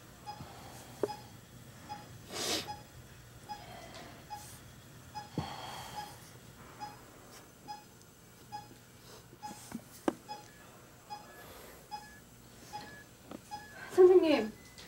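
Bedside ECG monitor beeping steadily, one short beep with each heartbeat, a little more than once a second. Now and then the airy whoosh of a bag-valve mask being squeezed to ventilate the patient, with a few light clicks.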